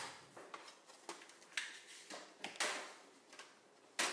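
Faint handling sounds of cardstock and a plastic scoring board being moved and set down on a cutting mat: about five short, soft rustles and taps spread over the few seconds.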